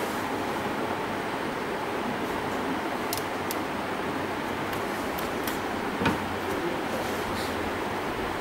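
Steady room hiss and hum, with a few faint ticks and one sharper click about six seconds in as the oscilloscope's front-panel knobs and switches are worked by hand.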